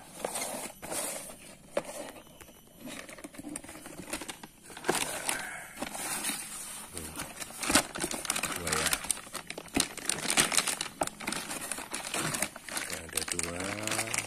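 A cardboard parts box being opened by hand, with the packaging and the clear plastic bags around the stabilizer links rustling and crinkling in an irregular run of sharp crackles, busier in the second half.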